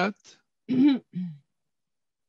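A person's voice: a spoken word ends at the start, then two short non-word vocal sounds come a little under a second in.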